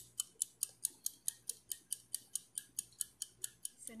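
Wind-up mechanical kitchen timer, just set for 20 minutes, ticking steadily at about five ticks a second as it counts down.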